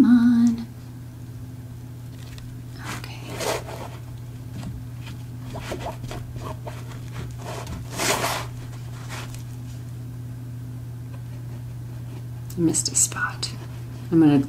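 Hands handling a fabric-covered book cover and paper on a cutting mat. There are scattered soft rustles and scrapes, with a louder rustle about eight seconds in as the glue bottle is picked up, over a steady low hum.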